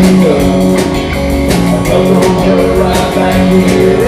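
Live rock band playing without vocals: electric guitars, bass, drum kit and keyboard, with a steady drum beat and a guitar line with bent, sliding notes.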